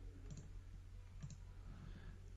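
A few faint computer mouse clicks, two of them close together a little over a second in, over a low steady hum.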